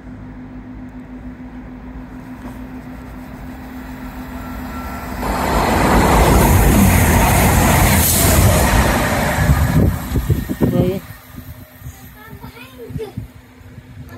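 A CrossCountry Voyager diesel multiple unit passing at speed. Its sound builds over a few seconds, stays loud as a rush of noise for about five seconds while it goes by, then falls away quickly.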